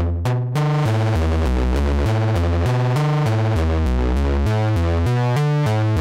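Eurorack modular synthesizer playing a repeating low note sequence through a DIY Buchla-style resonant low-pass gate. The notes are short and plucked at first; about half a second in they stop decaying and run on as sustained notes, and their upper tones keep shifting.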